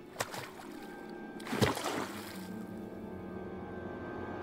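Film soundtrack of slow, dark orchestral score with held tones that slowly swell. There is a sharp hit just after the start and a louder thump about a second and a half in.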